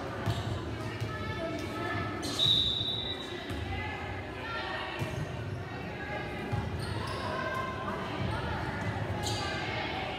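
Volleyball match sounds in a reverberant gym: players and spectators talking and calling out, with a few sharp ball strikes. The loudest moment is a short, high referee's whistle blast about two and a half seconds in.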